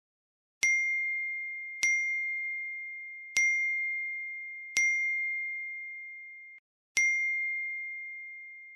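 A phone messaging app's notification ding, a single clear bell-like tone, sounds five times one to two seconds apart, each ringing out and fading. It is the alert for each new chat message arriving.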